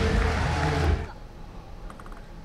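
A commentator's voice over loud crowd applause, both cutting off suddenly about a second in, leaving quiet hall ambience with a few faint quick clicks near the end.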